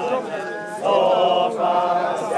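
A group of voices singing a chant together in long held notes, swelling louder about a second in.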